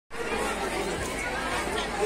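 Indistinct chatter of many voices, a low murmur of people talking at once.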